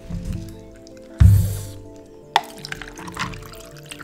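Background music, with a drink poured from a plastic bottle into a glass full of ice. A short, loud rushing burst comes about a second in, and a sharp click follows just after two seconds.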